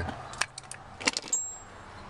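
Light metallic clicks and clinks of a folding Torx key set being handled, then a brief high ring about halfway through.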